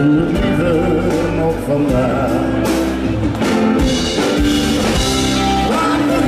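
Live band playing a Dutch-language pop song: a male lead vocal sung into a handheld microphone over electric guitar, drum kit and keyboards.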